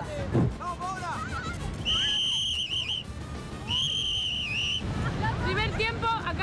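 A referee's whistle blown in two long blasts about a second apart, each dipping slightly at its end.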